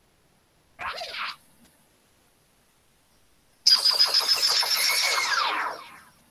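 Online gameshow quiz sound effects: a short chime about a second in as a score bonus is tallied, then, from about the middle, a louder two-second jingle with a held high tone and pitches sliding downward, announcing the bonus round.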